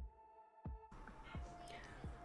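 Near silence: faint room tone, with one soft click a little over half a second in and a few light taps after it.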